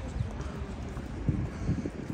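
Footsteps of a person walking: an uneven series of low knocks, several a second.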